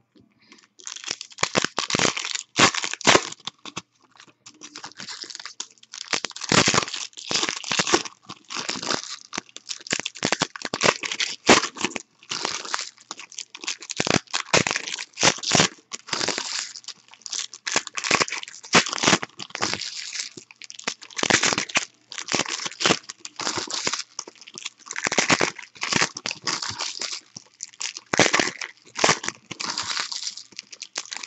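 Foil wrappers of 2015 Panini Elite Extra Edition baseball card packs being torn open and crumpled by hand, one pack after another: a continuous, irregular crinkling and tearing.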